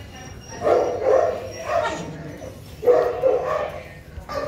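Several dogs vocalising in short bursts of barks and yips, with pauses between, around a second in, near two seconds and again around three seconds in.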